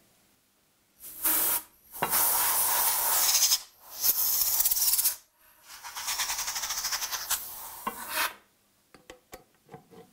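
Compressed-air blow gun blowing out an aluminium valve profile: four hissing blasts of air with short gaps between them, the last about three seconds long and fluttering. A few faint clicks follow near the end.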